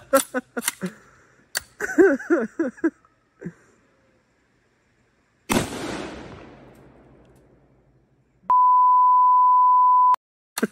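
A Mosin-Nagant 91/30 rifle, chambered in 7.62×54mmR, fires a single shot about halfway through, and its report dies away over a couple of seconds. Near the end a loud, steady, high censor bleep covers the speaker's words.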